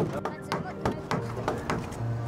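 Wooden mallets knocking on timber beams: one loud knock right at the start, then several lighter knocks.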